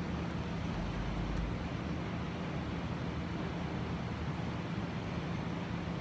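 Steady outdoor background rumble with a low steady hum underneath, and a brief deeper rumble about a second in.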